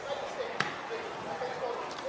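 A football struck once, a single sharp thud about half a second in, over faint shouts of players on the pitch.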